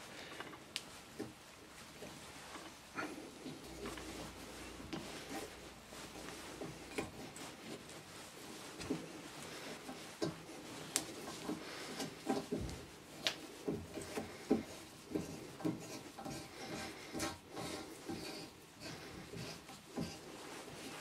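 A hand tap being turned in a tap wrench to cut a thread in steel: faint scraping with irregular small clicks and creaks as the tap cuts and is backed off to break the chips, the clicks coming more often in the second half.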